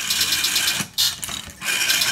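Rotary telephone dial pulsing the line of a 1950s GEC PAX 25-line private telephone exchange, whose relays and selectors step in answer: rapid, even clicking in runs broken by short pauses, the dial's pulses stepping the exchange through to the called line.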